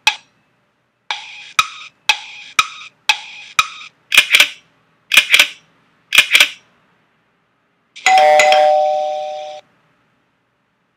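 Countdown-timer sound effect: clock-like tick-tock clicks, about two a second, then three louder double ticks a second apart as the count nears zero. After a short pause, a bell-like ring sounds for about a second and a half and fades, signalling that time is up.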